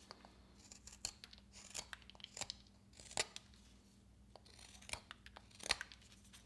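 Detail carving knife slicing shavings from a basswood block: a string of short, faint cutting strokes at irregular intervals.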